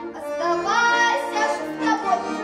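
A girl singing a Russian folk song, holding long notes that slide between pitches, over an accordion accompaniment.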